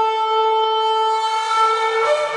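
Long spiral kudu-horn shofar sounding one sustained, steady-pitched blast. Its tone grows brighter about a second and a half in.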